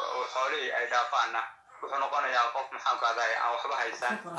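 A person talking continuously, with a brief pause about a second and a half in.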